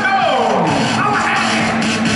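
Music playing over an arena's public-address system, with the murmur of a large crowd in the hall. A sliding tone falls steeply in pitch during the first second.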